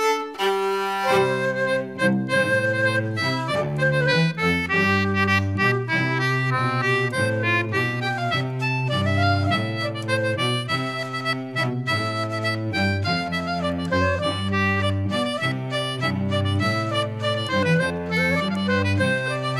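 Instrumental English folk dance tune: a squeezebox carries the melody over a steady bass line, the full band coming in about a second in after a solo fiddle lead-in.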